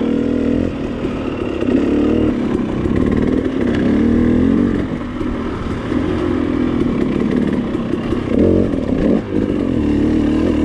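2019 KTM 300 XCW TPI fuel-injected two-stroke dirt bike engine being ridden on trail, its revs rising and falling constantly as the throttle is worked, with a few quick rev surges near the end.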